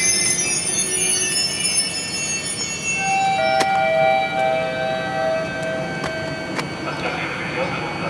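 Express passenger train at the end of its stop: the last high-pitched wheel and brake squeal fades out in the first second or two. Then come a few sharp clicks and, about three seconds in, a two-note tone lasting two or three seconds, with a voice starting near the end.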